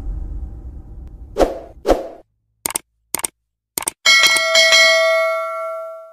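Animated-intro sound effects. A low rumble fades out, then come two short hits about half a second apart and three sharp clicks. About four seconds in, a bell-like ding rings out with several steady tones and dies away over about two seconds.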